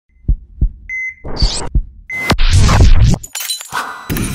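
Sound-effects intro sting: two low thumps about a third of a second apart, a short high beep, a hiss and another thump, a second beep, then a loud crashing noise lasting about a second that breaks up into scattered noise.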